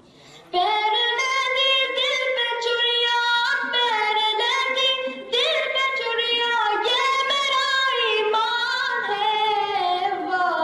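A high solo voice singing a Pashto-Urdu naat with no instruments, in long ornamented phrases with vibrato. The voice comes in about half a second in, after a short pause.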